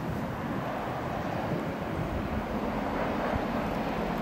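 DB class 212 diesel-hydraulic locomotive running as it approaches at low speed, a steady engine sound that grows slightly louder toward the end.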